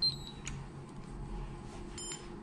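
Short high electronic beep from a DPM-816 coating thickness gauge as its two-point calibration begins, a light click about half a second later, and a second beep at the very end.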